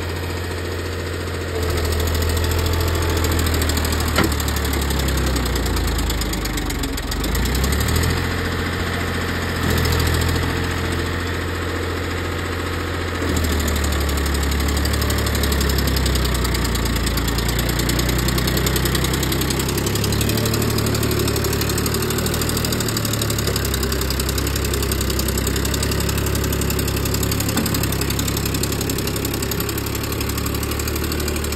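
Farmtrac Champion tractor's diesel engine running under load while hauling an empty trolley up a sandy slope, its speed rising and falling several times.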